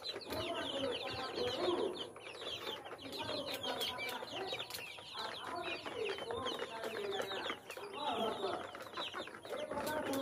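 A flock of young chicks peeping continuously in many short, high, falling chirps, with adult hens clucking lower underneath.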